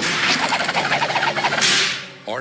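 Cartoon action sound effects: a busy run of whooshes and thwacking hits over music, with a loud rushing swish near the end.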